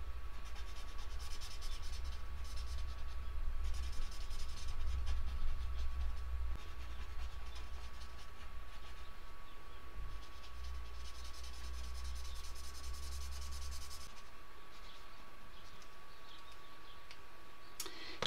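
Coloured pencil shading on drawing paper: quick scratchy back-and-forth strokes in stretches, with a pause in the middle, stopping about four seconds before the end.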